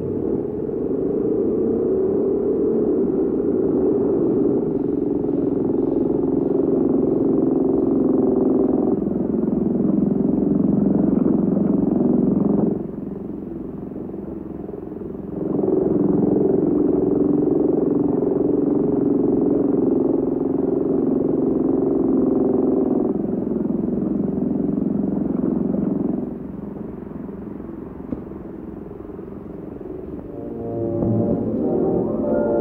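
Muffled orchestral film-score music from a 1950s movie on a TV next door: sustained low chords that shift every few seconds. It drops quieter twice, the second time near the end.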